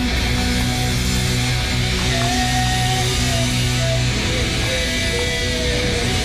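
A rock band playing live, with electric guitar to the fore over a full band sound.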